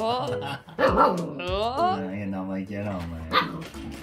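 Border Collie puppy barking at an adult dog in high, yappy calls, several of them rising in pitch.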